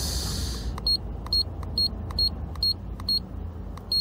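HKS EVC6 boost controller's display unit beeping at each button press as its menu pages are stepped through: about seven short, high electronic beeps at roughly two a second, over a low steady rumble. A short rustle opens it.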